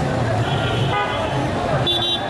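Vehicle horns sounding in busy street traffic over crowd chatter. One horn is held for under a second starting about half a second in, and a short, higher toot comes near the end.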